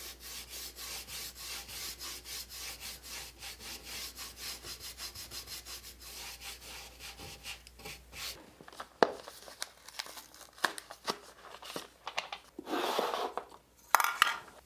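A small paintbrush scrubbing quickly back and forth on a painted wooden dresser panel, a fast, even run of scratchy strokes, several a second. After that come a few sharp clicks and a short rustle as a paint can and a paper plate are handled.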